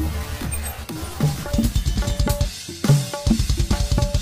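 Instrumental intro of a Sundanese pop song in koplo-jaipong style: a driving, busy drum pattern led by kendang hand-drum strokes, with no singing yet.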